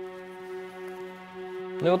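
Arena end-of-round horn: one steady, unchanging horn tone held for about two seconds, signalling the end of the first round.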